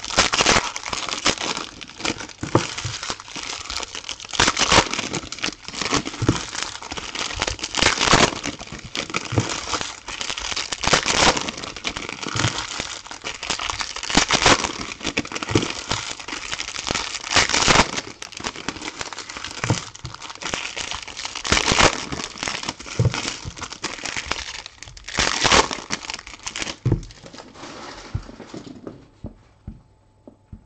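Foil trading-card pack wrappers crinkling and rustling in irregular bursts as packs are torn open and handled. The sound dies down near the end.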